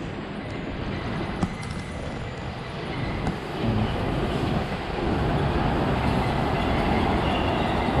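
Sentosa Express monorail train running past overhead, a steady rumble that grows louder about halfway through and holds as the train goes by.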